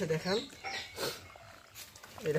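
Faint wet squelching and squishing of hands kneading and squeezing a soaked maize-and-yeast feed mash in a plastic bucket, in short irregular bursts.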